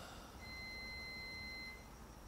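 A faint electronic beep: one steady high tone held for about a second and a half, over quiet room tone.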